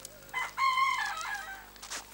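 A rooster crowing once, starting about half a second in and lasting about a second, ending in a falling tail.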